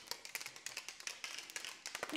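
Plastic protein shaker bottle being shaken to mix clear whey protein: a faint, rapid, irregular run of clicks and knocks.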